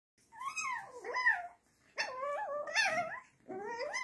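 Puppies wrestling in play, giving high, wavering whining yelps in three bouts of about a second each.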